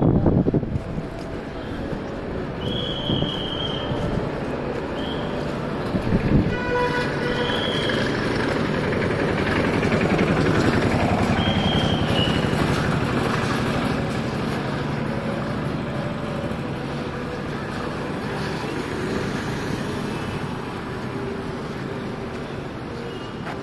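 Steady outdoor road traffic that swells and fades, with several short vehicle horn toots and two thumps, one at the start and one about six seconds in.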